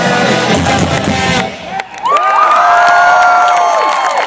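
Live ska-punk band with electric guitars and drums playing loudly through the PA, then stopping abruptly about a second and a half in as the song ends. After a brief lull, the crowd cheers, with loud sustained shouts and whoops.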